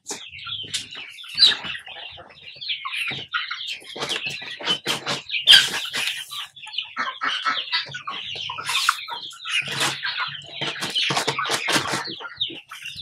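A small flock of Rhode Island Red hens clucking and calling continuously as they feed, with a brief louder rustle about halfway through.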